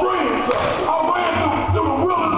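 A man preaching loudly and excitedly in a large hall, his words too unclear for the transcript to catch.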